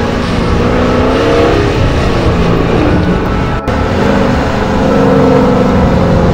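Dodge Challenger's engine and exhaust running loud and hard, its pitch rising and falling as it revs, with a momentary break about three and a half seconds in.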